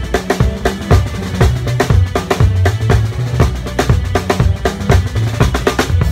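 A drum kit played close up in a band: fast snare and cymbal strikes with bass drum, over held bass notes and other instruments.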